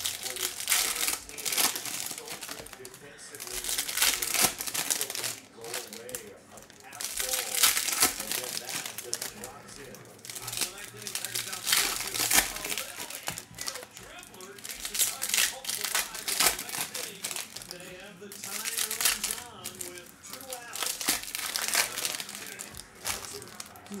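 Foil trading-card pack wrappers crinkling and tearing as packs are ripped open, in repeated bursts every second or two, with cards handled in between.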